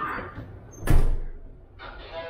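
A door banging shut once, about a second in, with a sharp loud impact.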